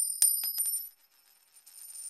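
An edited-in money sound effect: two bright metallic strikes with high bell-like ringing and a jingle of coins, dying away within a second. A second shimmering jingle swells in near the end.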